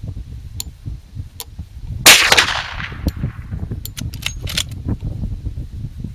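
A single shot from a Marlin 1894 lever-action carbine in .357 Magnum about two seconds in, loud and sharp with a short echoing tail. A couple of seconds later come several quick metallic clicks of the lever being worked to chamber the next round.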